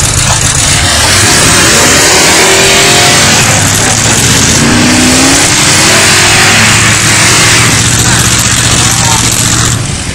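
Dodge pickup engine held at high revs, wheels spinning in heavy wet snow as the stuck truck is rocked to break free. A steady loud engine drone runs throughout, with whining pitches rising and falling in the middle.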